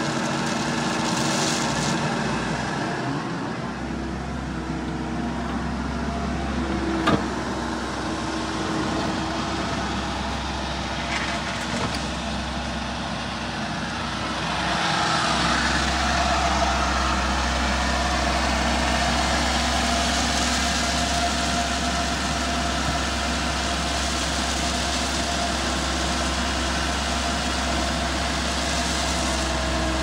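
Komatsu PC78 excavator's diesel engine and hydraulics running steadily, heard from inside the cab, getting louder from about halfway through. A single sharp click about seven seconds in.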